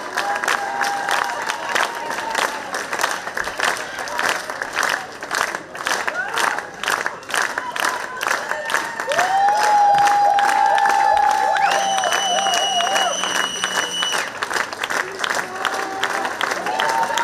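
A concert audience applauding steadily, with cheering calls rising over the clapping and the applause swelling about two-thirds of the way through.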